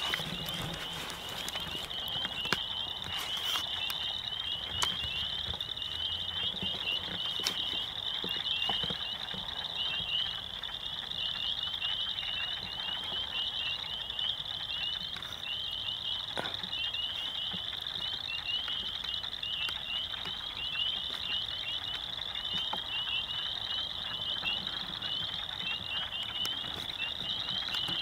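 A dense, steady night chorus of many small calling creatures: rapid high-pitched chirps overlapping into one unbroken trilling that carries on throughout, with a few faint clicks over it.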